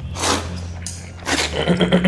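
A person slurping cold noodles from a bowl: two noisy slurps, the first just after the start and a shorter one about a second and a half in.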